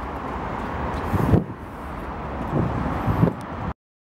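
Outdoor street ambience: a steady wash of traffic noise with some wind on the microphone, and a vehicle passing about a second in. The sound cuts out to silence just before the end.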